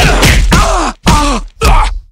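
A person's voice making three loud grunts of effort, each falling in pitch, voicing the blows of a fight.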